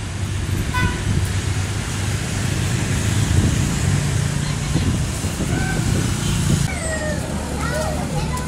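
Street traffic, with motorbike and minibus engines running and a short horn toot about a second in. People's voices call out in the second half.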